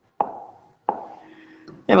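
Two sharp taps on a hard surface, about two-thirds of a second apart, each ringing briefly in a small room. A man's voice starts just before the end.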